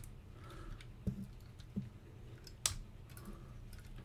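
Faint plastic clicks and handling of a Transformers Bludgeon action figure's parts being moved by hand during transformation, a few separate clicks with the sharpest about two-thirds of the way through.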